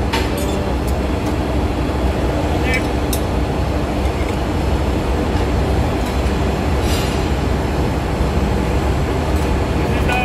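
Steady drone of running engine-room machinery. A few short metallic clinks from a ring spanner on the rocker arm nuts come at the start, about three seconds in and about seven seconds in.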